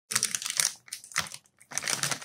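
Clear plastic zip-lock bag crinkling as it is handled, in a run of irregular crackles.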